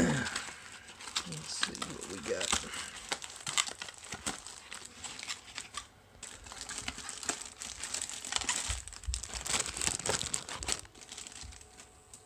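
Plastic packaging wrap crinkling and rustling in irregular bursts as a handheld radio is pulled out and unwrapped, with a short lull about halfway and the noise stopping shortly before the end.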